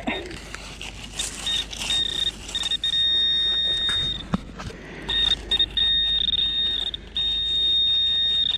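Metal-detector pinpointer giving a high electronic tone, first in short beeps and then in longer steady stretches, as it closes in on a metal target in the dug-out beach shingle: an old pound coin.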